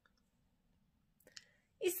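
Near silence, then a brief faint click a little over a second in, just before speech resumes near the end.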